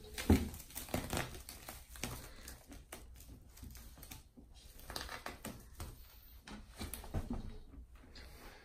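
Plastic cling film stretched across a doorway crinkling and crackling as it is pulled and pressed by hand, in irregular little clicks and rustles.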